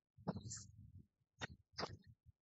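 A man sniffing and clearing his nose: a longer breathy burst, then two sharp short sniffs near the end.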